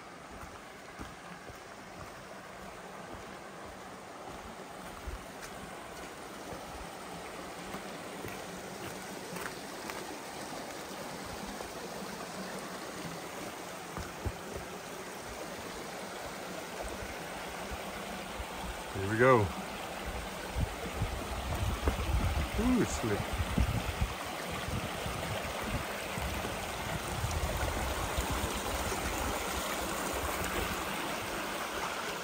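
A rocky mountain creek rushing, getting steadily louder, with low thuds through the later part. A short voice sound comes about two-thirds of the way in, followed by another a few seconds later.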